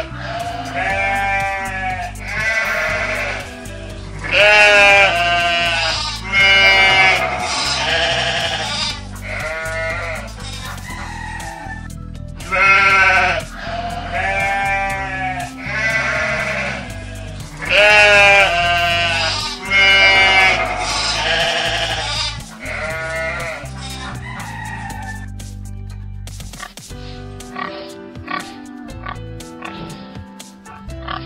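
Sheep bleating again and again, about twenty short, quavering calls one after another, over background music. The calls stop about 25 seconds in.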